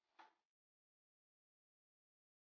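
Near silence: a brief faint sound in the first half second, then nothing at all.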